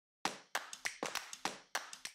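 Percussive sound effect for an animated logo intro: a quick, even run of sharp clap-like hits, about three a second, each dying away briefly.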